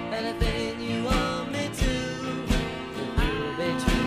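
Music from a small band led by acoustic guitars, playing a slow song with a steady beat about every 0.7 seconds.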